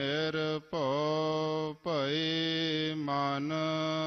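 A single voice chanting a Gurbani verse of the Hukamnama in long held notes. The pitch dips and climbs back at each new syllable, twice, then settles on one steady sustained tone.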